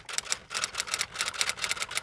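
Typewriter sound effect: a rapid, uneven run of sharp key clacks, several a second.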